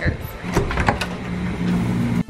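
A hotel room door's metal lever handle turned and its latch clicking as the door is opened, a few sharp clicks with handling noise over a low steady hum.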